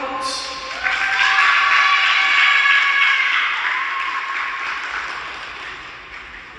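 Arena audience applauding and cheering for a skater as she is introduced. The applause swells about a second in and then fades steadily away.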